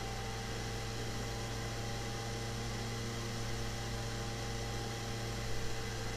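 Steady low electrical hum with a constant hiss underneath: the background noise of the recording microphone's line.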